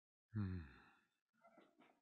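A man sighs a low, voiced "hmm" about a third of a second in, fading out within about a second. Two fainter, shorter breath or mouth sounds follow.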